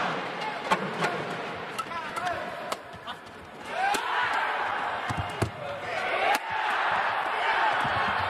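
Badminton rally in an arena: sharp racket strikes on the shuttlecock and shoes squeaking on the court over crowd noise, which grows louder about halfway through.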